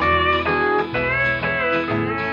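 Instrumental intro of a 1957 country record: a guitar lead with sliding, bending notes over bass and a steady rhythm, before the vocal comes in.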